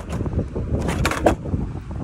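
Wind buffeting the phone's microphone in a heavy low rumble while a skateboard rolls on a concrete sidewalk, with a few sharp clicks around a second in.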